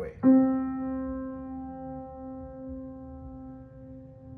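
A single note struck once on a Steinway grand piano about a quarter second in. The key is held down but the arm tension is released at once, so the note rings on and fades slowly, blooming rather than being damped.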